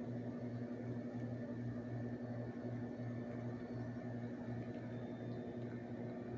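Steady low electrical hum from a running appliance, its lowest note pulsing about twice a second.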